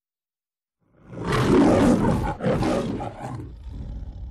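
The MGM logo's lion roar: a recorded lion roaring twice, starting about a second in, the first roar loudest and the second weaker and trailing off.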